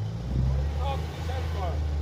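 Steady low rumble of a road vehicle's engine in street traffic, getting louder shortly after the start, with a faint voice briefly in the middle.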